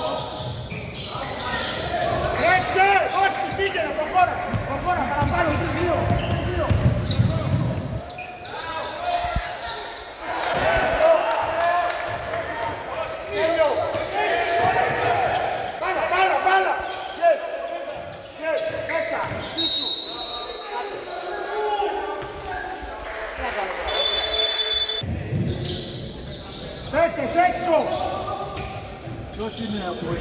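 A basketball being dribbled and bounced on a hardwood court during play, with players' footfalls, echoing in a large gym. Two brief high-pitched sounds come a little past the middle.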